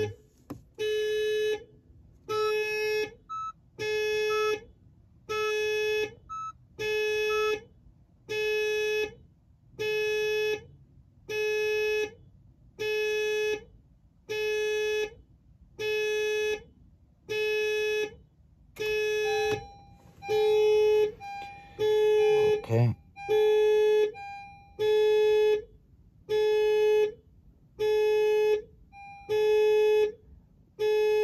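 A repeating electronic warning beep, one steady note about a second long sounding roughly every second and a half, while the HR-V's push-to-start button is held down during immobilizer key programming. About 23 seconds in there is a brief bump.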